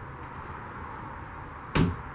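Low steady room noise inside a travel trailer, with one short, sharp knock near the end.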